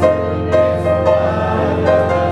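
A church congregation singing a hymn together, holding long notes that change about half a second in and again near the end, over a steady low sustained note.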